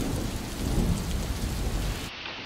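Steady heavy rain with low thunder rumbling underneath, as in a storm sound effect.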